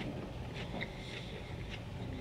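Faint close-miked chewing of a mouthful of raw bell pepper with the mouth closed: a few soft, moist clicks over a steady low hum.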